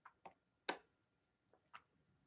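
A thin plastic water bottle crackling as someone drinks from it: four short, separate clicks, the loudest a little under a second in.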